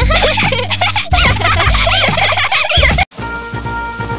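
Cartoon kittens giggling over background music; the giggling cuts off suddenly about three seconds in and different, quieter music takes over.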